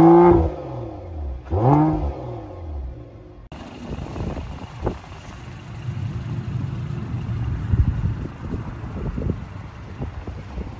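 2022 Mercedes-AMG GLE 53's turbocharged inline-six revved through its quad exhaust in two short blips, each rising and falling in pitch, the second about two seconds in. After a sudden cut, wind noise on the microphone with a low rumble.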